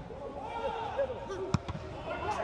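A football kicked hard, one sharp thud about one and a half seconds in, with a couple of lighter knocks around it. Players shout in a stadium with no crowd.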